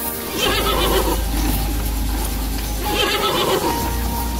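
Horse whinnying twice, once about half a second in and again about three seconds in, over a steady low hum.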